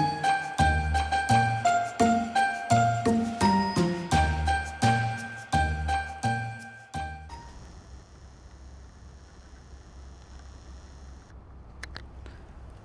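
Light, chiming background music with a bouncy bass line, cut off abruptly about seven seconds in, leaving only faint steady hiss.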